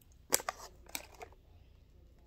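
Plastic candy bag crinkling as it is picked up and handled: a few sharp crackles in the first second, then quieter rustling.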